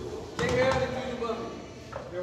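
A man's voice rings out loudly for under a second, about half a second in, over quieter background chatter, followed by a single sharp knock near the end.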